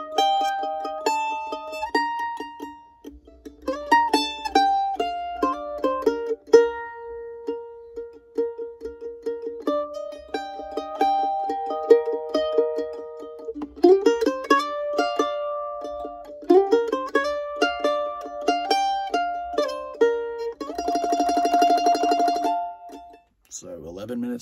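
F-style mandolin played solo: a melodic line of single picked notes with slides up into some of them. Near the end it breaks into a couple of seconds of fast tremolo on a held chord, then stops.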